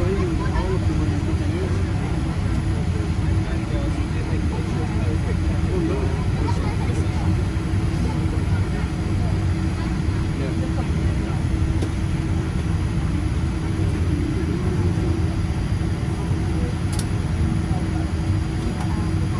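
Cabin noise of a Boeing 787-8 taxiing after landing: the steady low rumble of its GEnx-1B engines at idle with a steady hum, and passengers talking in the background.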